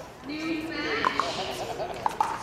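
People's voices talking between points, with a couple of sharp pocks of pickleball paddles hitting the ball on nearby courts about halfway through.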